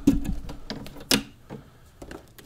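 Jolin Lab Tabør Eurorack module putting out irregular sharp clicks and ticks, loudest near the start and about a second in, then fading.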